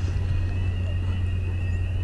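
Steady low rumble of city street traffic, with a faint high whine held steady throughout.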